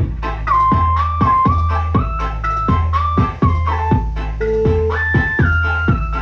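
Music played loud through a DIY power amplifier built on an MCRD V3 driver board: a heavy bass beat with a deep thump over and over, under a flute-like lead melody of held notes.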